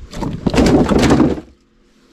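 Rustling and scraping of a sack and a wooden deck board being handled in a small wooden boat as a caught fish is stowed in the hold. The noise is loud and dense, then stops about a second and a half in.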